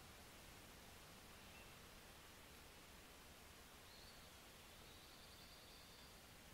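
Near silence: faint steady room-tone hiss, with a faint high thin tone in the last two seconds.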